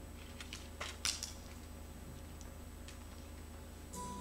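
Quiet room tone with a steady low hum, and a few faint clicks and knocks about a second in.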